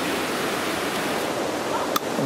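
Steady rushing of a mountain stream cascading over rocks.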